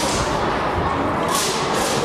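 Karate gi snapping with fast strikes during a kata: two sharp swishes in quick succession near the end, over the murmur of a crowd in a large hall.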